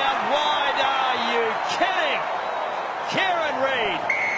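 Excited rugby commentator's voice calling the play, over steady stadium crowd noise.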